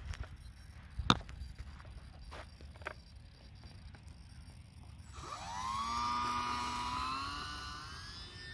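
A sharp click about a second in, then the UMX Timber's small electric motor and propeller spin up about five seconds in as the throttle is opened for the takeoff: a whine that rises in pitch, holds, and fades a little as the plane moves away.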